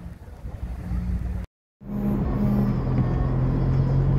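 A faint outdoor rumble, then a sudden cut to the steady low hum of a car's engine and tyre noise heard from inside the cabin as it drives slowly on an iced-over road.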